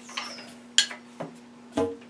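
Cleaning rod with a patch being worked through a muzzleloader barrel's bore, making a few sharp clicks and scrapes over a faint steady hum.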